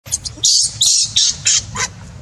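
Baby macaque screaming in a rapid series of about five or six shrill screeches, in distress while an adult macaque pins it down on its back.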